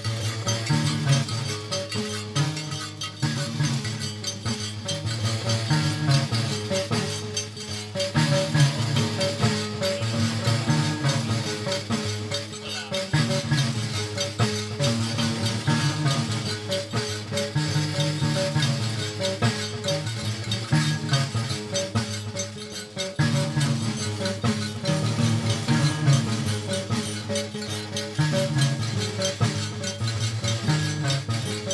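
Live Malian traditional music: a ngoni harp-lute plays a repeating low plucked figure, accompanied by a steady, even scraping rhythm from an iron tube scraper (karignan).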